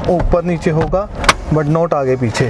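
A person talking in a steady haze of background noise, with one sharp click a little past the middle.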